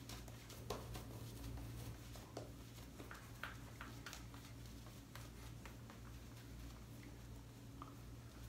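Synthetic-knot shaving brush working thin, nearly spent shave-cream lather over the face: faint brushing strokes with scattered light ticks, over a steady low hum.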